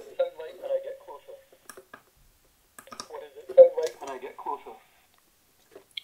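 A recorded voice played back by an ISD1820 voice-recorder module through its small speaker, set into a Pringles can as an improvised enclosure. The voice comes in two short stretches and sounds thin and tinny, with no bass, though the can makes it sound a lot better.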